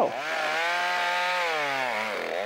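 Chainsaw cutting into a standing tree trunk. The engine revs up at the start, holds a steady high note, then drops in pitch near the end.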